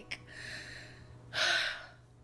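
A woman breathing while crying: soft breath for about a second, then a louder gasping inhale near the end.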